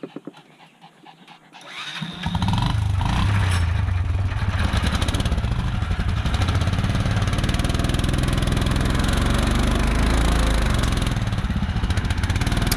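Argo amphibious ATV engine running under way, loud and steady. It comes in sharply about two seconds in after a quieter start.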